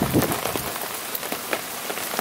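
Steady rain falling, an even hiss with many scattered drips and patters.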